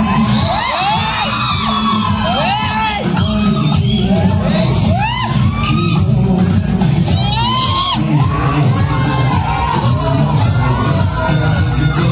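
Loud dance music from a stage loudspeaker, with a crowd of children cheering and whooping over it. The whoops come as many short calls that rise and fall in pitch.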